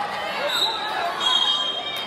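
Spectators and coaches shouting over one another in a gymnasium. A short, high, steady squeal comes about halfway through.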